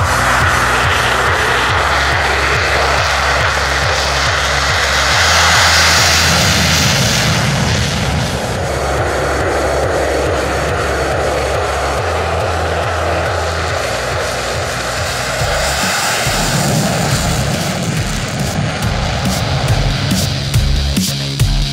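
F-16 fighter's Pratt & Whitney F100 turbofan running at full power with afterburner on its take-off run and climb-out: a loud, steady jet rush that swells about six seconds in, with music playing underneath.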